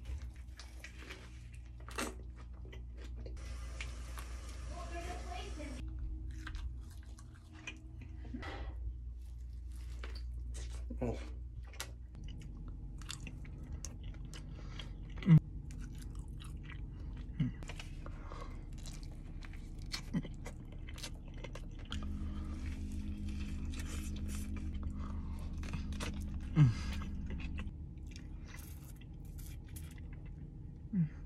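Close-up biting and chewing of fast food, first a hamburger and then forkfuls of food, with many small crunching and clicking mouth sounds and a few sharper clicks. From about twelve seconds on, a steady low hum lies underneath.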